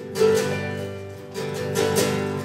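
Acoustic guitar strummed live, a few chord strokes ringing out between sung lines.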